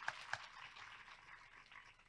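Faint, thin applause from an audience, a few separate claps in the first half second, then dying away.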